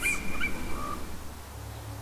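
Faint bird calls: a thin, steady whistled note that fades out after about a second, with a shorter, lower note partway through, over a low background rumble.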